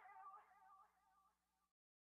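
Near silence: the very faint tail of the song's last held note, wavering with vibrato as it fades out, then cut off to dead silence near the end.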